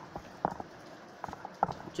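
A few light taps and knocks from a pen and notebook being handled: one about half a second in, then a quick cluster near the end.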